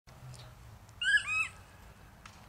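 A bird giving two short, high calls in quick succession about a second in, the first bending up then down.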